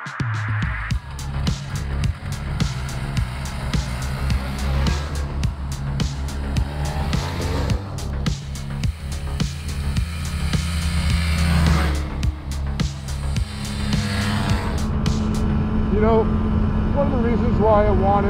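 Snowmobile engines running on a trail, a vintage Yamaha Inviter among them, the engine pitch rising and falling as they rev.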